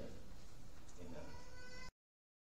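A short pitched voice-like sound over steady room sound, then all sound cuts off abruptly near the end.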